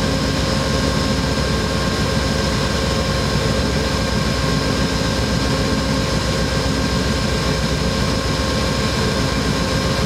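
GE Genesis P42DC diesel locomotive idling at a standstill, its 16-cylinder engine giving a steady, dense rumble with several constant high tones above it.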